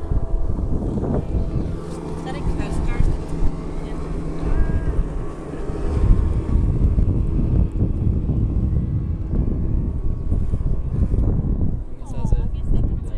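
Wind buffeting the microphone over the steady drone of a boat engine.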